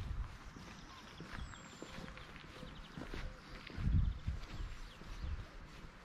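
Footsteps of someone walking over a gravel path: soft, uneven steps with a crunchy crackle, the heaviest thud about four seconds in.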